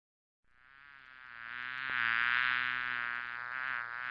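A bee buzzing. It fades in about half a second in and grows louder over the next second or so, its pitch wavering.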